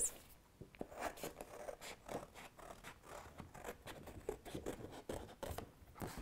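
Scissors cutting a circle out of a sheet of card: a steady run of faint, short snips, two or three a second.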